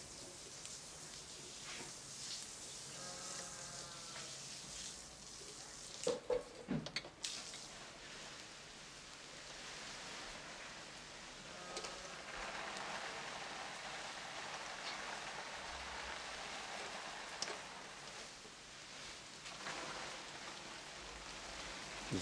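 Skewered meat sizzling over hot charcoal in a mangal grill: a steady soft hiss throughout, with a short louder voice-like sound about six seconds in.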